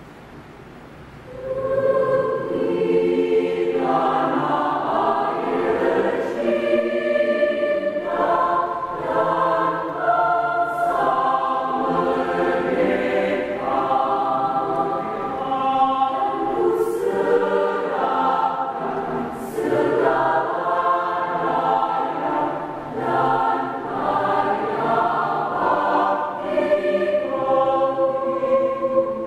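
Mixed choir of men's and women's voices singing together, coming in about a second in after a quiet start and carrying on steadily.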